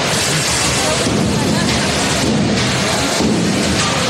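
Hammer-armed combat robots fighting: hammer strikes and clatter on armour mixed with drive motors, forming a loud, steady din with voices in the background.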